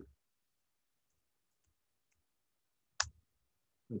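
A single sharp click of a computer keyboard key about three seconds in, against near silence.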